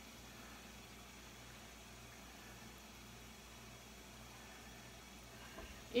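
Faint steady hiss with a low hum: kitchen room tone.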